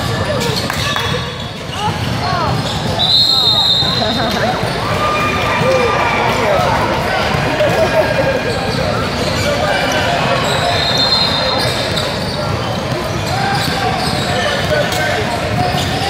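A basketball dribbling on a hardwood gym floor, mixed with voices of players and spectators calling out across the hall. Two short high squeals come in, about three seconds and eleven seconds in.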